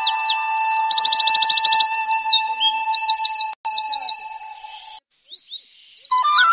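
Background music of steady sustained tones with rapid, evenly repeated high chirps like birdsong over it. One sharp click comes near the middle, and the music drops out briefly about five seconds in.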